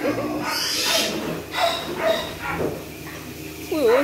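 Wild boars giving a few short grunts and squeals as a boar tries to mount a sow.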